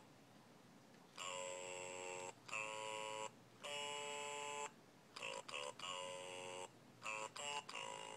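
An electronic baby toy playing a simple tune in steady, beeping notes: a few held notes about a second long, a short pause near the middle, then a run of quicker, shorter notes.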